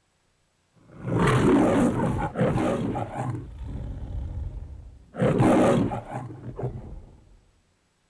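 The MGM logo lion's roar: Leo the lion roaring twice, the first roar in several pulses about a second in, the second starting about four seconds later.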